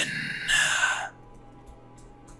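A man's breathy whispered voice trailing off into a long exhale for about a second, then faint, steady ambient background music.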